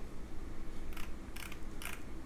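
A few faint clicks from a computer mouse, roughly two a second, as the on-screen document is scrolled, over a low steady hum.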